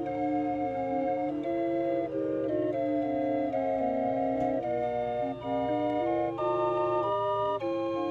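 Two small hand-cranked street organs played together, their pipes sounding a tune in steady held notes that step from pitch to pitch over a sustained low note.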